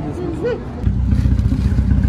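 A short voice sound, then about a second in a sudden switch to a car engine running nearby, a loud, deep, pulsing exhaust rumble.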